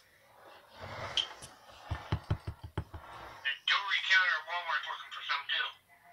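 A rustling stretch ending in a quick run of about six low knocks, then a baby squealing and babbling for about two seconds, her pitch sliding up and down.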